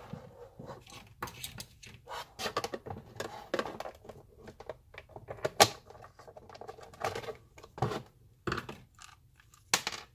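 Hard plastic housing of a coffee maker being handled and taken apart: irregular clicks, knocks and rattles as the body is turned over, a screwdriver pries at the base, and the base plate comes off near the end. The sharpest knock comes about halfway through.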